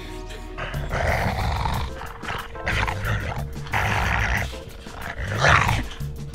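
A woman making harsh zombie-style growls and eating noises in several rough bouts, over background music.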